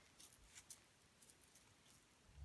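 Near silence: room tone with a few faint, scattered clicks of small plastic beads being handled.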